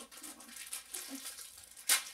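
Thin plastic snack wrapper crinkling and rustling as it is handled around a cookie, with one sharp, loud crackle near the end.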